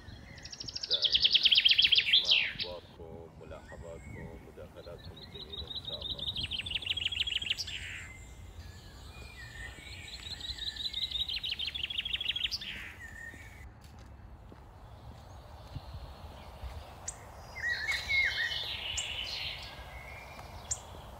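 A bird calling, three times, each a rapid trill of about two seconds that ends in a falling sweep, then a burst of varied chattering calls near the end.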